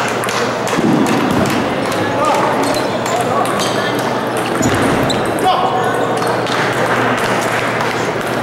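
Table tennis ball clicking off the bats and table during a serve and short rally, heard over many voices talking in a large hall.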